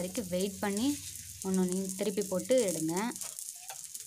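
Oil sizzling steadily under an aloo paratha on an iron dosa griddle. A voice talks over it for about the first three seconds, leaving the sizzle alone near the end.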